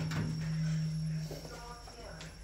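A Kone lift's call button pressed with a click, over a steady low hum from the moving lift that fades away about a second and a half in.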